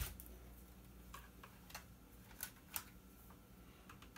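Faint, scattered light clicks and taps of a black plastic monitor housing being handled, about six in four seconds.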